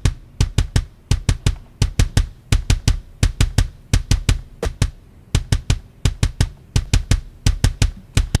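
Soloed, sampled metal kick drum playing fast double-bass runs at 170 bpm, each hit a deep thump with a sharp beater click, with a short break just before the middle. It is heard with and without the saturation and high-end boost of its SSL channel-strip plugin.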